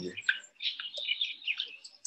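Small birds chirping in short, scattered calls, heard from the soundtrack of an outdoor video playing through a video call.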